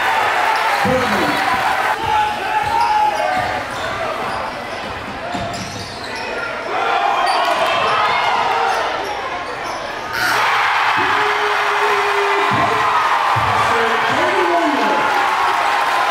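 Basketball game sound in a school gym: a ball being dribbled on the hardwood under the chatter of the crowd. About ten seconds in, the crowd noise jumps suddenly to loud cheering, the sign of a made basket.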